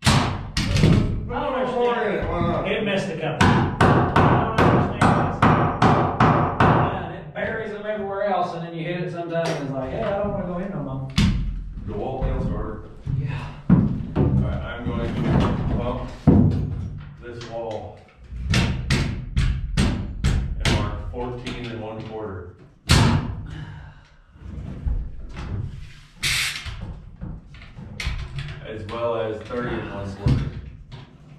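Many sharp knocks and bangs on wood stud framing, coming in quick runs of about three a second and then more irregularly, as the studs are nailed and fitted into place.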